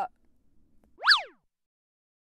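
A short transition sound effect about a second in: a tone that sweeps quickly up and then straight back down, lasting about half a second.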